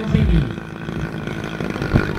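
Engine of a large radio-control aerobatic plane, a 100 cc engine, running steadily as the plane flies low over the field, heard through a phone's microphone. The tail of an announcer's words over a loudspeaker sits on top in the first half second.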